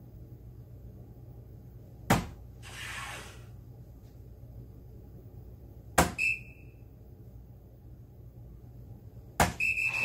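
Three soft-tip darts striking an electronic soft-tip dartboard, each a sharp click, about two seconds in, six seconds in and near the end. The second and third hits are each followed by a short high electronic beep as the board registers the dart.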